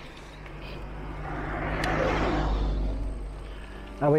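A motor vehicle passing close by on the road. Its noise swells to a peak about two seconds in and then fades away.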